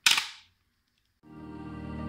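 Detachable visor snapping onto a bike helmet: one sharp snap that dies away within half a second. Background music fades in from just over a second in.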